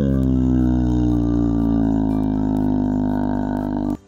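A man's voice making a long, low buzzing drone as a mouth sound effect for a toy ship crashing. The pitch falls at first, then holds steady, and the drone cuts off suddenly.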